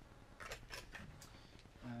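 Faint clicks and rustles of hands handling fishing lures and their plastic packaging, in a short cluster about half a second to a second in.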